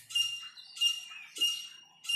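A small bird chirping outside, three short, high chirps at the same pitch, evenly spaced about two-thirds of a second apart.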